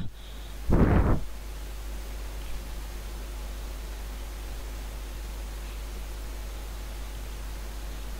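Steady hiss over a low hum, with no speech. A short burst of noise sounds once, about a second in.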